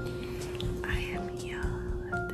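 A woman whispering softly over background music with sustained notes.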